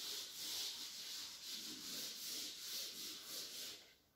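Chalkboard duster being rubbed back and forth across a blackboard, a dry rubbing hiss that swells with each stroke, about two strokes a second; it stops just before the end.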